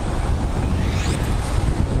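Steady wind rumble on an outdoor microphone, with street traffic going by.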